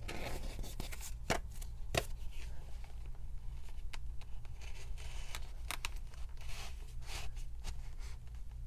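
Small paper cards being slid and pushed into the card slots of a fabric-lined zip-around wallet: soft rustling and paper-on-fabric scraping with a few sharp clicks and taps, over a steady low hum.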